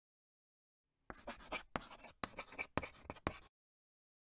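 Chalk writing on a chalkboard: a quick run of short scratching strokes that starts about a second in and stops shortly before the end.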